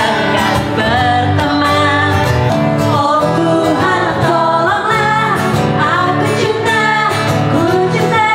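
Women singing a song into microphones with a live band accompanying, electric guitar among it.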